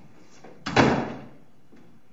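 A wooden door being pulled shut: one sharp bang about two-thirds of a second in, dying away within about half a second.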